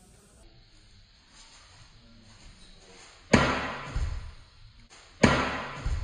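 Two loud, sudden thuds about two seconds apart, each followed by a smaller second knock.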